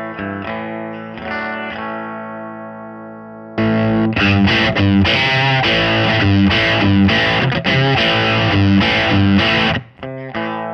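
Electric guitar (Telecaster, bridge pickup) played through a Dr. Z MAZ tube amp as the clean signal, with no pedal engaged. Chords are left ringing and fading for about three and a half seconds, then harder, louder strumming starts suddenly and cuts off just before the end.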